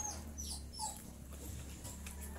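A few short, high-pitched animal whines that fall in pitch, one near the start and another just under a second in.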